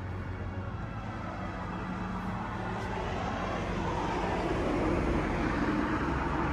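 Road traffic noise, a vehicle passing, the engine and tyre noise slowly growing louder.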